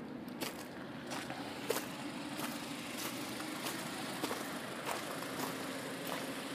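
Faint outdoor background: a steady low hum with a few light, scattered ticks of footsteps on gravel.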